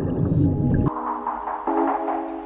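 Low, gurgling underwater rumble of a scuba diver's breathing and exhaust bubbles, cut off abruptly about a second in by background music of sustained, layered tones.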